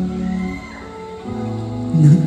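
Live band playing the slow instrumental stretch of a pop ballad: held chords, a short high gliding note about half a second in, then a new chord with bass entering just past a second in.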